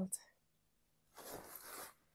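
Heavy work shorts being handled and lowered: a brief scratchy rustle of stiff cloth and zip, starting a little after a second in and lasting under a second.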